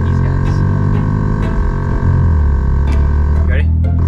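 Background music with a steady bass line that moves to a new note about halfway through, over a held higher note that cuts off shortly before the end.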